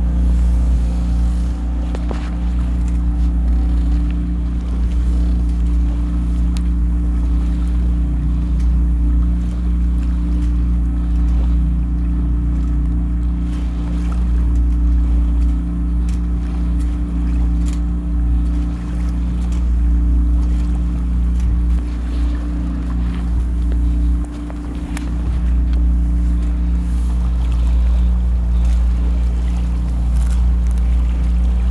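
A catamaran under way on its motor: a steady low motor hum, with water rushing along the hull. The hum dips briefly about three-quarters of the way through.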